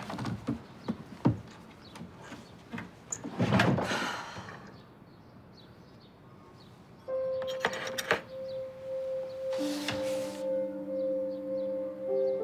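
Hands rummaging through a wooden dresser drawer: knocks and clatter of small objects, with a louder clatter about three and a half seconds in. Then a brief quiet spell before soft background music with long held notes comes in about seven seconds in, with more notes joining a couple of seconds later.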